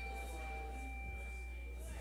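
A struck bell ringing on after a single strike, one clear high tone over a fainter lower one, slowly fading, with a steady low electrical hum underneath.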